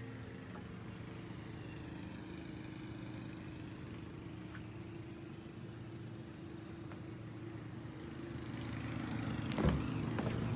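A steady, even mechanical hum from a running motor, growing a little louder near the end, when a couple of sharp knocks come.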